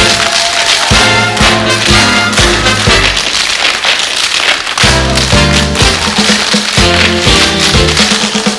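Many tap shoes striking a stage floor in rhythm over loud swing-style band music. For a couple of seconds near the middle the band's low notes drop out and the tapping carries on mostly alone.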